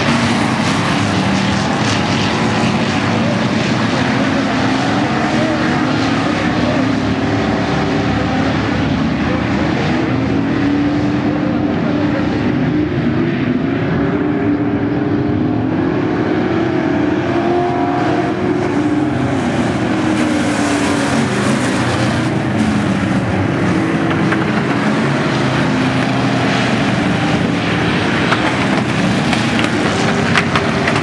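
Several V8 dirt-track stock cars racing as a pack, their engines running loud and steady, with the pitch rising and falling as the cars accelerate down the straights and lift for the turns.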